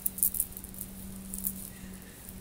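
Oracle cards being handled: a few quick, light rattling clicks near the start and another about one and a half seconds in, over a steady low hum.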